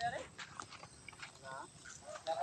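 A person's voice: a few words trailing off right at the start, then one short voiced sound about one and a half seconds in, with quiet between.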